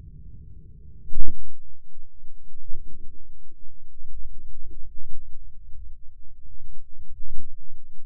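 .500 S&W Magnum revolver shot, slowed down: one deep, very loud boom about a second in, then low rumbling that swells and fades with a few weaker thuds.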